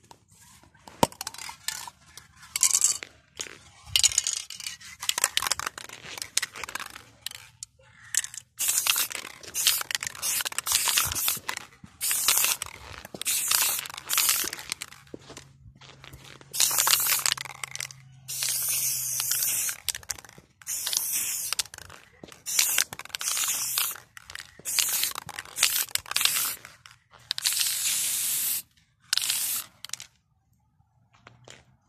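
Aerosol spray-paint can hissing in repeated bursts, each from a fraction of a second to about two seconds long with short pauses between, as letters are sprayed onto the asphalt.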